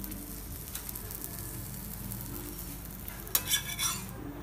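Butter sizzling under a stuffed paratha on an iron tawa, a faint steady frying hiss. Near the end a metal spatula scrapes and clicks against the pan as it goes under the paratha.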